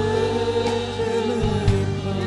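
A man singing a Sinhala gospel worship song into a microphone, holding one long note, with keyboard accompaniment and a few sharp beats.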